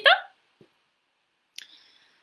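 A woman's voice trails off on an upward glide at the very start. After a pause, a quick, sharp intake of breath comes about one and a half seconds in.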